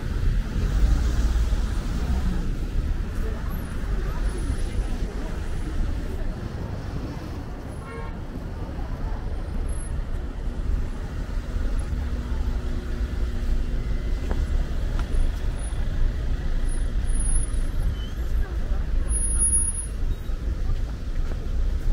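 Busy city street ambience: steady traffic on an adjacent multi-lane road, with indistinct talk from nearby pedestrians. A steady engine hum stands out for a few seconds around the middle.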